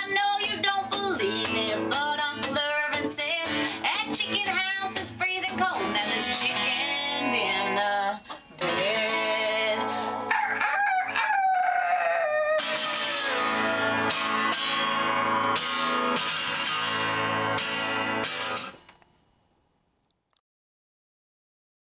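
Acoustic guitar strummed through the closing bars of a country song, with high, wavering wordless calls over it in the first half and a long falling call about ten seconds in. The guitar stops, and its last chord dies away shortly before the end.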